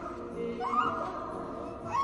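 Horror film soundtrack: a low sustained drone under a high, wavering, whimper-like cry that rises and falls from about half a second in.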